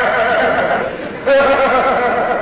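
A man's voice imitating a horse's whinny: long quavering neighs, with a short break and a new neigh about a second in.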